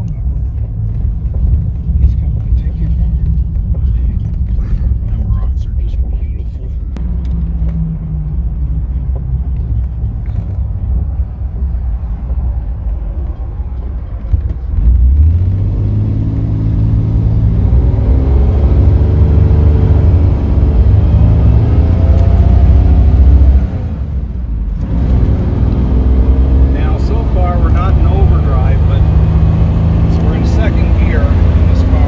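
In-cabin drone of a 1939 Graham sharknose sedan on the move: low engine and road rumble. About halfway through, the engine note steps up and climbs as the car accelerates. It drops off briefly and then climbs again near the end.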